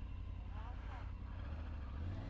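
Triumph Tiger adventure motorcycle's three-cylinder engine running at low revs as the bike rolls slowly off along a gravel track.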